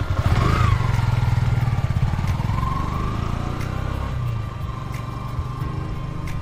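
A vehicle engine running with a low, fast-pulsing rumble that slowly fades, and a thin steady tone above it.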